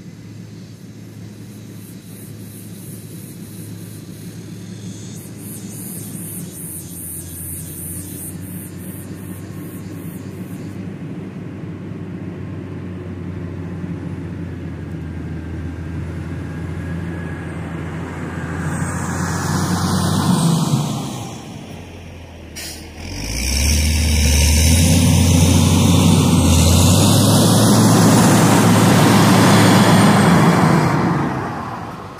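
Caterpillar 120K motor grader's diesel engine running as the machine drives up on a dirt road, growing steadily louder as it nears. It dips briefly about two-thirds of the way through, then is loud and close for the last several seconds as the grader draws alongside.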